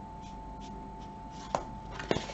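Tarot deck being handled: faint soft rubbing and ticking of the cards, then one sharp card snap about one and a half seconds in, over a faint steady hum.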